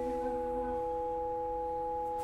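Vibraphone chord left ringing: several metal bars sound steadily together with no new strikes. A lower note drops out just under a second in.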